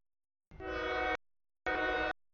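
Freight locomotive air horn sounding two blasts, a longer one about half a second in and a shorter one near the end, each a chord of several tones: an approaching CSX train signalling for the grade crossing.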